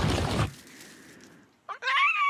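A loud rumbling crash-like sound effect cuts off about half a second in and trails away. Near the end a cartoon bird character lets out a loud cry that bends up and down in pitch.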